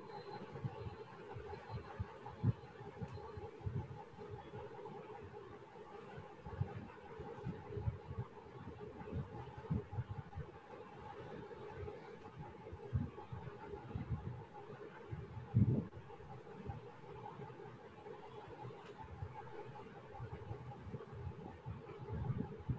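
Faint background noise from an open microphone on a video call: a steady low hum with irregular soft low thumps and rumbles scattered throughout.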